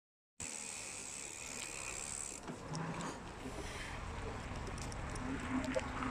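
Steady rushing of wind on the microphone and road noise from a bicycle riding along a street. It starts a moment in, carries a thin high whine that stops about two and a half seconds in, and has a few light clicks.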